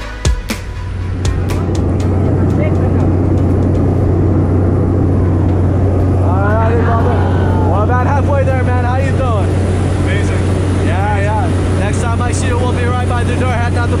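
Steady, loud drone of a small propeller jump plane's engine heard inside its cabin during the climb, with people's voices and laughter over it from about six seconds in. A bit of music with drum hits cuts off in the first half second.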